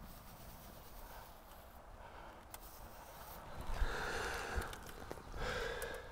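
A person breathing out audibly twice, a longer breath about three and a half seconds in and a shorter one near the end, with a few faint clicks.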